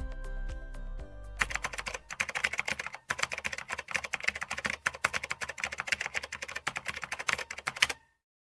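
Background music with a steady beat, then, about a second and a half in, a rapid run of keyboard-typing clicks from the intro sound effect that stops suddenly at the end.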